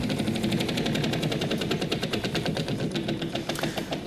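Game-show prize wheel spinning, its pointer flapper clicking rapidly and evenly against the pegs on the wheel's rim.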